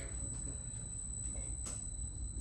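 A steady low hum with a faint, thin high-pitched whine above it, and a faint tick near the end; no engine is running.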